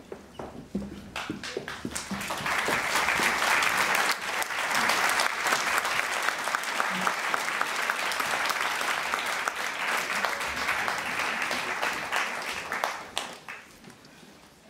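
A group of people applauding. Scattered claps build within a couple of seconds into steady applause, which holds and then dies away near the end.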